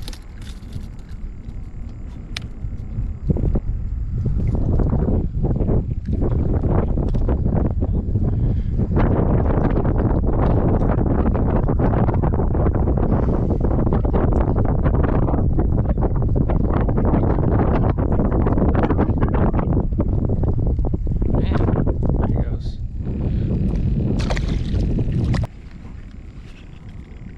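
Strong wind buffeting the microphone: a loud, ragged low rumble that builds about four seconds in and cuts off suddenly near the end.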